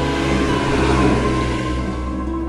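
A car driving past, its rush of engine and tyre noise swelling to a peak about halfway through and easing off, over steady sustained intro music.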